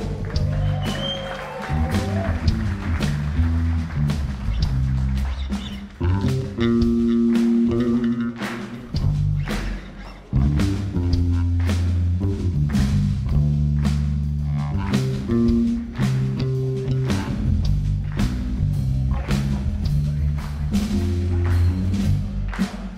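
Electric bass taking a solo feature of deep, moving notes, with the drum kit keeping a steady beat of cymbal and snare hits under it.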